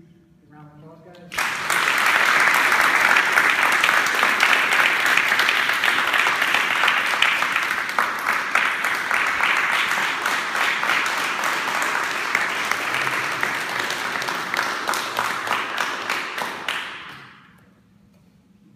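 A group of people clapping and applauding together. The applause starts suddenly about a second in, holds steady, and fades out near the end.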